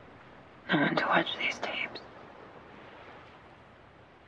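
A woman's soft, breathy voice: a short utterance of about a second, a little after the start, over a steady faint hiss.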